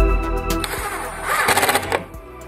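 A cordless drill-driver runs for about a second and a half, driving a screw through a metal corner bracket into a wooden tabletop, loudest near the end. Background music with a steady beat plays under it.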